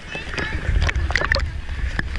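Pool water sloshing and splashing around a camera held at the waterline, with a low rumble from about half a second in and scattered clicks and splashes as water hits it.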